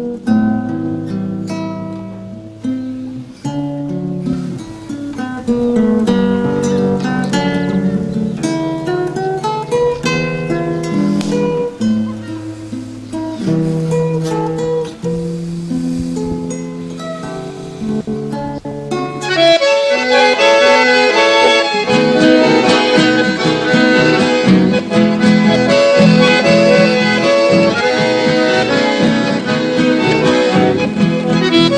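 Chamamé music: an acoustic guitar plays on its own. About twenty seconds in, an accordion and the rest of the band come in, fuller and a little louder.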